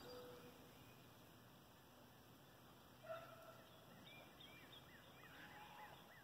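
Faint bird calls over near silence: a short call about three seconds in, then a run of brief repeated chirps near the end.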